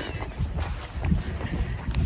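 Wind buffeting a handheld phone's microphone while running: a low, uneven rumble.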